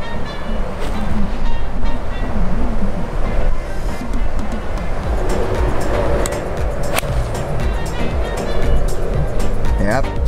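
Background music over wind rumble on the microphone, with a single sharp click about seven seconds in: a golf iron striking the ball on a short approach shot.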